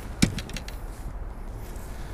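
A single sharp knock about a quarter second in, followed by a few faint clicks, over a steady low rumble.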